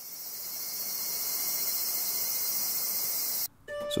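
A steady, high-pitched insect chorus that fades in at the start and stops abruptly near the end.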